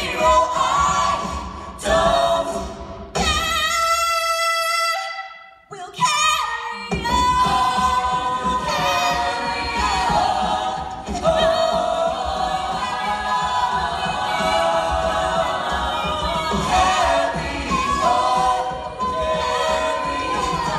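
A cappella group singing live through stage microphones, close harmony over a low, regular vocal-percussion beat. About three seconds in the beat and lower parts drop out for a single held note that fades away, then the full group and beat come back in.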